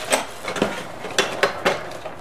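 Raw abalone and mother-of-pearl shell trimmings clinking and clattering as a hand rummages through them on a wooden workbench, with about five sharp clicks.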